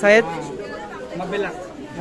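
Young men talking and chattering together. One voice is loud briefly at the start, then quieter overlapping talk follows.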